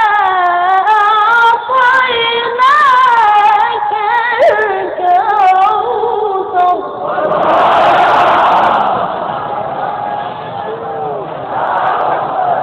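A single high voice chants a long, ornamented melodic phrase of Quran recitation. About seven seconds in, an audience breaks in with a loud collective call of many voices, which rises again near the end.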